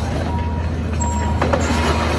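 Crawler excavator moving on its tracks: a steady low engine drone with a high beep repeating about every half second, typical of a travel alarm. A short, sharper sound comes about one and a half seconds in.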